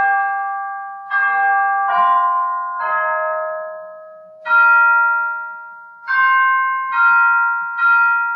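Piano playing slow chords, each struck and left to ring and fade, a new chord about every second.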